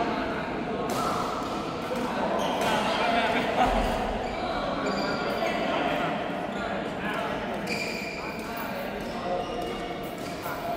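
Voices talking in a large, echoing sports hall, with a few sharp knocks scattered through.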